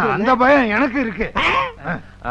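A man's loud, animated voice, its pitch swinging widely up and down.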